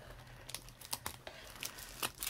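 Faint rustling of paper and crinkling of clear plastic packaging as a pack of craft paper is handled, with a few soft, scattered ticks.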